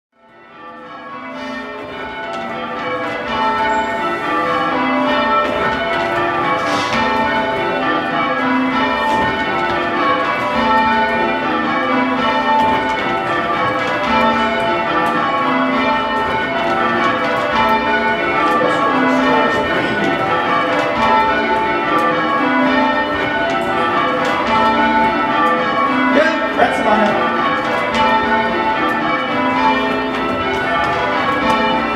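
Ring of six 1846 C. & G. Mears church bells being change rung, strike following strike in a steady, even rhythm. The sound fades in from silence over the first few seconds.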